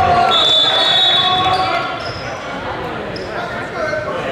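Gym sound during a basketball game: voices of players and spectators echoing in a large hall, with a basketball bouncing. A thin, steady high tone sounds for about a second near the start, and the noise eases off about halfway through.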